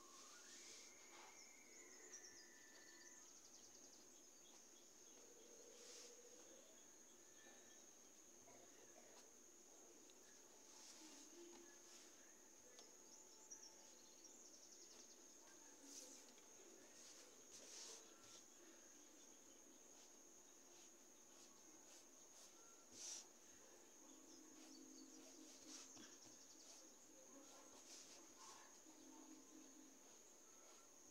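Near silence: faint room tone with a steady high-pitched whine throughout and a few faint clicks.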